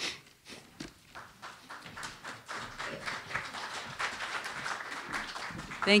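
Room noise of an audience between speakers: faint murmuring voices and scattered light taps and knocks, growing a little fuller about two seconds in.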